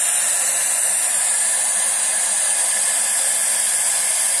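Loud, steady TV static sound effect, a hiss of white noise with no bass, censoring the end of a spoken sentence.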